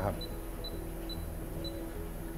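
Short high beeps from a MAST Touch tattoo power supply's touch buttons, about four in two seconds, one for each press as the voltage setting is stepped. Soft background music plays underneath.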